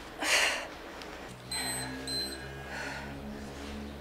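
Hard breaths pushed out about every second and a half during an exercise, the first the loudest. Between them, two short high electronic beeps from an interval timer, and a steady low hum.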